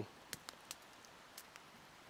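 Small wood campfire crackling faintly, a few sharp pops over a low hiss.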